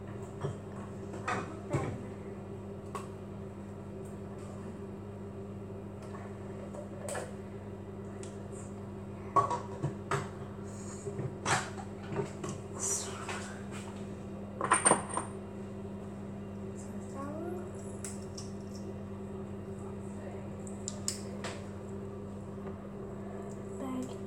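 A steady low hum under scattered light clicks and clattering knocks, with the busiest clusters about ten and fifteen seconds in.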